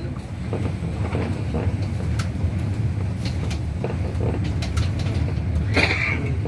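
City bus running, heard from inside the cabin: a steady low engine and road rumble with scattered rattles and clicks, and a brief sharper noise near the end.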